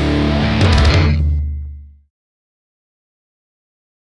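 Closing chord of a rock song: electric guitar and bass ring out after a few last drum hits, fading to nothing about two seconds in.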